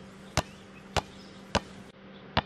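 Rubber ball dribbled by hand on a concrete sidewalk: three sharp bounces, about 0.6 s apart.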